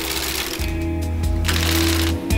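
Hand-operated flat-bed knitting machine: the carriage is pushed across the double needle bed with a rattling of needles, in two passes, one at the start and one about one and a half seconds in. Background music plays under it.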